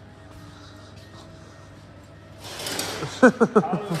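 A man laughing in short bursts near the end, over a steady low workshop hum, with a hissing noise rising just before the laugh.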